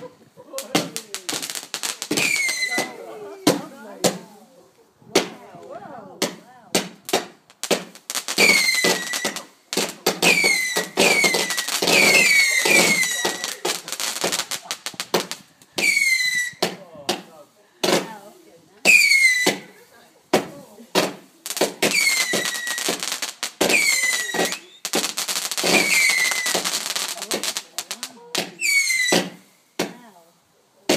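A firework cake firing a long string of shots, each with a whistle that drops in pitch, among many bangs and crackles. The whistles come in clusters with short lulls between them.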